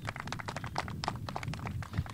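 Scattered applause from a small group of people clapping: a quick, irregular run of claps.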